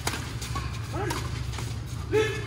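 A badminton racket strikes a shuttlecock once at the very start with a sharp crack, and a short vocal call follows about a second in. A steady low hum runs underneath.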